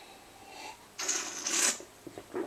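Two short breathy mouth noises about a second in and a second and a half in, from someone tasting a fizzy orange soda between remarks.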